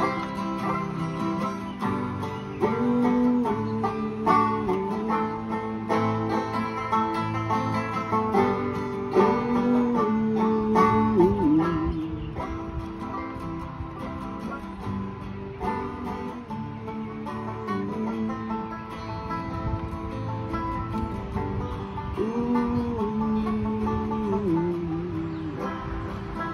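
Live acoustic band playing an instrumental passage: banjo picking over two strummed acoustic guitars, with a held, sliding melody line above them.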